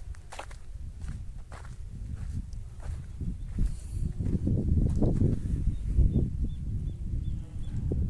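Footsteps crunching on dry dirt and gravel at a steady walking pace, over a low, uneven rumble that grows louder in the second half.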